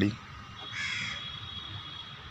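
A bird gives one short, harsh call about a second in, over a faint steady high-pitched tone.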